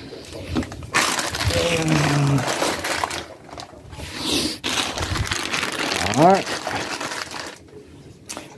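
Plastic food packaging rustling and crinkling as it is handled, loudest for a couple of seconds about a second in. A man's short wordless vocal sounds come between, including one rising sound near the end.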